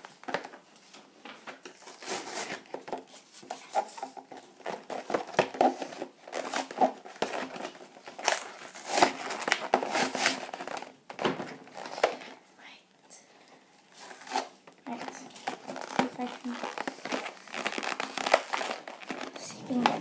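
Plastic and cardboard packaging of a Littlest Pet Shop toy pack being handled, crinkling and crackling irregularly as fingers pick at it to open it.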